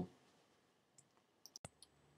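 Near silence with a few faint, short clicks about one and a half seconds in.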